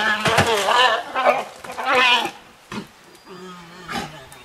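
Black bears bawling: a run of loud, drawn-out cries that waver in pitch through the first two seconds, then quieter, lower calls.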